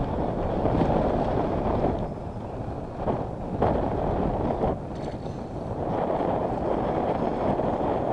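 Wind buffeting the microphone: a loud, uneven rumbling rush that rises and falls, with a few brief knocks about three and almost five seconds in.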